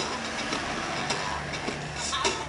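City street traffic, with a bus engine running close by in a steady low hum. Music plays faintly under it.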